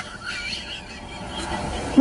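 Faint, steady road noise inside a moving car, with the tail of a short high-pitched squeal right at the start.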